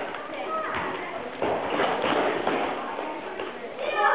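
Several basketballs bouncing irregularly on a hard floor, many short thuds overlapping, with children's voices over them.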